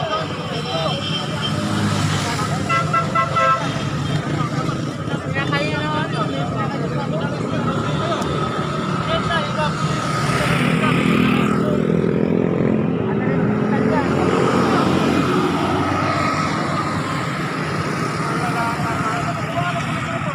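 Busy street traffic: motorcycle and car engines running close by, with a vehicle horn sounding and people talking in the crowd.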